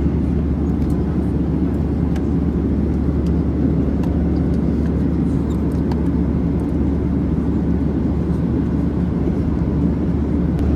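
Steady low rumble of a Boeing 737-800's cabin noise heard from inside the cabin, with a few faint light clicks scattered through it.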